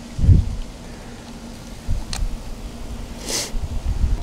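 Handling noise as a charger is plugged into a plastic power strip: a few low bumps, a sharp click about two seconds in, and a short rustle of cable a little past three seconds, over a low rumble.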